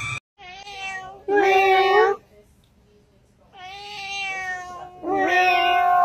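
Domestic cat meowing in long, drawn-out calls. There are two loud meows with a pause of about a second and a half between them, and the second runs nearly two seconds.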